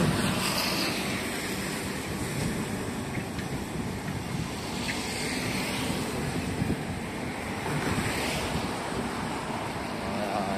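Wind blowing across the microphone at the water's edge: a steady rushing noise with a low rumble and no clear events.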